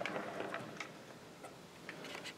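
Faint handling sounds on an unpowered Eppendorf 5417C benchtop centrifuge: a hand rubbing over its plastic lid for about the first second, with a few light ticks.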